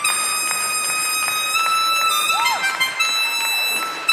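Solo harmonica played with hands cupped around it, a melody of long held notes that change every second or so, with one quick bent note that rises and falls a little past the middle.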